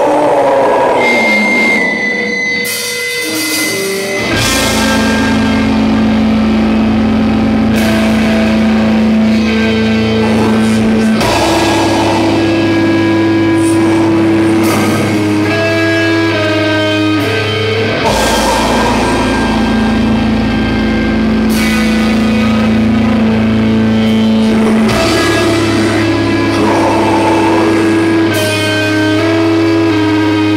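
Live heavy metal band playing a slow song with distorted electric guitars, bass and drums. A single sustained guitar note opens it, and the full band comes in about four seconds in with long held chords that change every few seconds.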